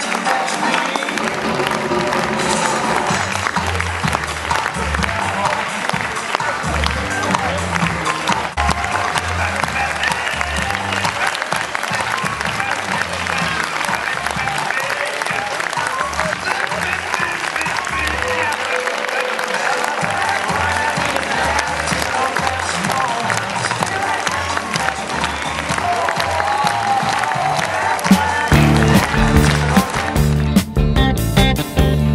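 Long, steady applause from a theatre audience and the performers on stage, with music playing underneath and voices in the crowd. Near the end it cuts sharply to a different song with guitar.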